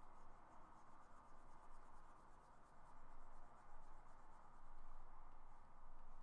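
Faint scratching of a stylus stroking across a Cintiq 22HD pen display, a run of short strokes over a steady low hiss.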